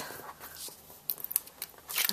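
Short irregular crackles and ticks of Tear & Tape adhesive tape being pulled and torn by hand.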